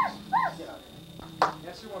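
A small dog yipping twice in quick succession, two short high calls, followed about a second later by a sharp click.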